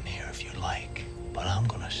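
Hushed, whispered voice speaking a few syllables over the trailer's score, which holds a steady low note.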